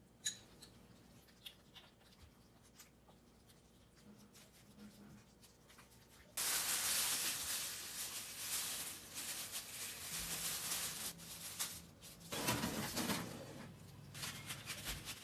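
Clear plastic roasting sleeve rustling and crinkling loudly as it is handled around the meat on the baking tray, starting suddenly about six seconds in. There are a few faint clicks before it and a second burst of crinkling and handling noise near the end.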